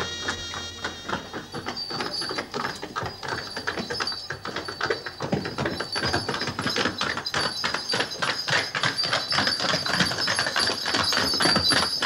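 Horse hooves clopping on a paved stone street, a rapid, irregular run of hard knocks, with a thin steady high tone above them. A little music fades out at the start.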